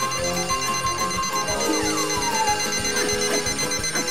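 Cartoon alarm clocks ringing: a rapid, evenly repeating high-pitched ring that runs on, with a falling tone about two seconds in.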